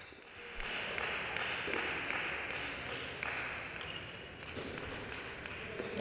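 Table tennis ball clicking against rackets and table during a rally: several faint, sharp clicks spaced irregularly over a steady hiss.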